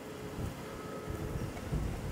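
Wind buffeting the microphone: a low, uneven rumble that comes and goes in gusts.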